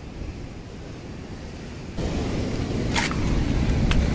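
Wind and surf noise on the microphone. It jumps abruptly louder about halfway through, and two short sharp knocks come near the end.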